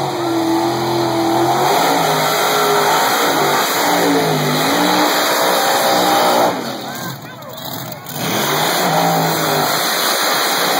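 Loud drag-racing engines revving, their pitch rising and falling again and again, with a brief drop in level about seven seconds in.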